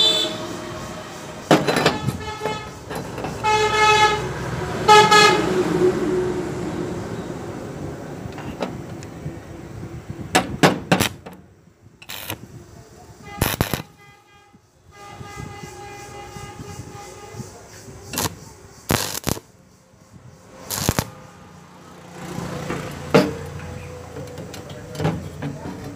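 About six short bursts of a stick-welding arc, each lasting a fraction of a second, as tack welds are struck on the corner joint of thin square steel tubing, in the second half. Earlier, vehicle horns honk several times in the background, the loudest thing near the start.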